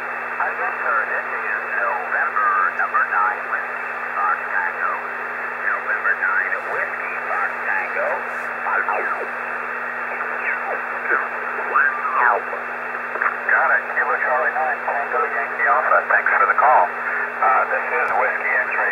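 Speaker audio from the AD5GH Express Receiver, a homebrew HF amateur-band receiver in upper-sideband mode, as its tuning dial is turned up through the 20-metre band. There is a steady, narrow-band hiss of band noise, and garbled single-sideband voices slide up and down in pitch as the tuning sweeps past them.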